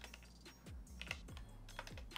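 Computer keyboard typing: a few faint, irregularly spaced keystrokes.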